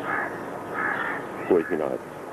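Birds cawing in the background, short hoarse calls about a second apart, with a brief bit of a man's speech near the end.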